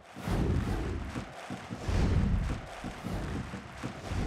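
Outro logo sting: sound-design hits with low booms and airy whooshing noise. The first hit comes just after the start and a second about two seconds in.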